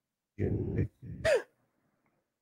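A man clearing his throat: two short rough vocal sounds, the second ending in a falling pitch.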